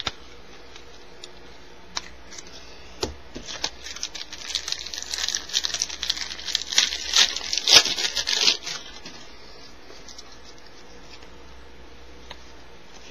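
A 1994 Upper Deck baseball card pack's wrapper being torn open and crinkled by hand: a few seconds of dense tearing and rustling that builds to its loudest near the end, with a few sharp clicks just before it.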